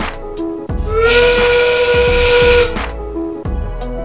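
The field's endgame sound cue, played as the match clock reaches thirty seconds: one loud held tone of about two seconds, sliding up at its start, over background music with a steady beat.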